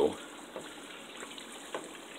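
Pot of pork fat rendering into lard, simmering with a steady soft bubbling as the water still cooks out of it, and a wooden spoon stirring through it with a few faint clicks.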